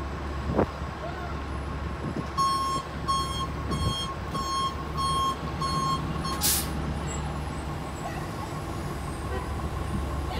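Orion V diesel transit bus idling with a low steady rumble. About two seconds in, a warning beeper sounds six evenly spaced beeps, a little over one a second, followed by a short, sharp hiss of released air.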